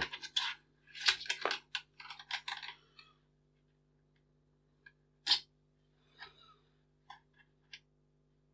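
Anodised shroud back piece being slid along a steel air rifle barrel and fitted against the action: light metal clinks and clicks, a quick run of them in the first few seconds, then a few scattered ticks with one sharper click about five seconds in.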